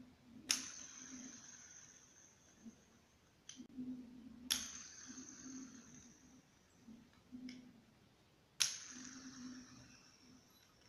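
A homemade plastic fidget spinner built from a cheap Rubik's cube's pieces is flicked three times. Each flick is a sharp click followed by a faint whirring that dies away over one to two seconds, with lighter ticks in between. The plastic pivot runs dry: it needs some lubrication, but it works correctly.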